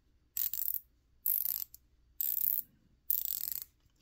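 Titan 11330 quarter-inch drive 90-tooth nano ratchet worked back and forth by hand: four short bursts of fine, rapid pawl clicking, about one a second.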